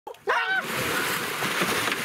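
Heavy, continuous splashing of water as a goliath grouper thrashes at the surface right beside a swimmer. It starts about half a second in, just after a short cry.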